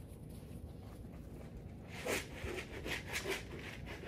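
Dog walking and sniffing on dry dirt close to the microphone. It is quiet at first, then a handful of soft scuffs and sniffs come in the second half.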